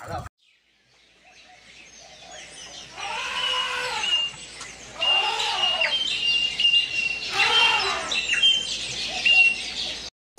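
Three long, drawn-out human shouts about two seconds apart, over short high bird chirps that repeat throughout.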